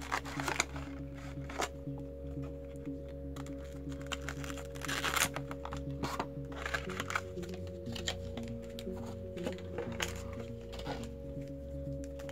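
Background music with steady held notes, over the rustling and crinkling of a cardboard trading-card box and its plastic card case and foil booster packs being handled as the box is opened.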